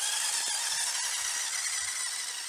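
Small battery-powered electric motor and gear drive of an RC Polaris RUSH snowmobile running under power, a steady high-pitched whine with hiss.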